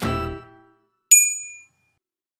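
The last note of a short intro jingle of plucked, pitched notes dies away. About a second in comes a single bright, high-pitched ding that fades within half a second.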